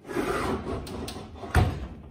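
An oven door being pushed closed. It moves with a rubbing, rattling noise and shuts with a thud about a second and a half in.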